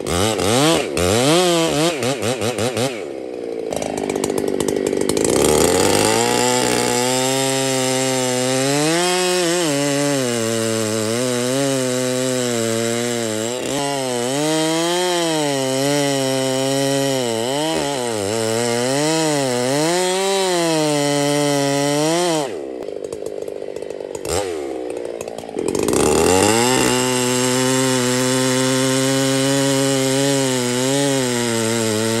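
Chainsaw with a 36-inch bar cutting a felling notch into the base of a large cedar. The engine pitch rises and falls as the bar works under load. About two-thirds of the way through it drops back for a few seconds, then runs steady again.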